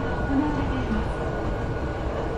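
Hankyu 8300-series electric commuter train standing with its doors open at an underground platform: a steady low rumble and hum from the idle train and station, with a faint thin steady whine and distant voices underneath.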